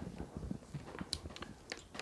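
Faint clicks and taps of a small aluminium handheld archery release being turned in the hands as its thumb spool is positioned, with one sharper click about a second in.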